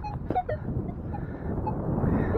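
Steel digging shovel cutting into grass turf: a few short crunches and knocks in the first half second, then low, steady noise.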